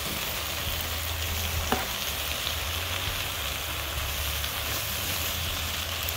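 Leafy greens sizzling in oil in a stainless-steel skillet on an induction cooktop, being stirred and turned with a metal spoon and a wooden spatula as they wilt down. A steady hiss with a low hum underneath, and one light click of the utensils about a third of the way in.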